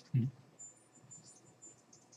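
An alarm going off in the room: a rapid run of faint, high-pitched chirping beeps, after a brief spoken syllable at the very start.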